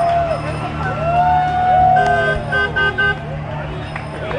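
A car horn honking four short times in quick succession about two seconds in, the first honk a little longer than the rest, over people's voices calling out and a steady low hum.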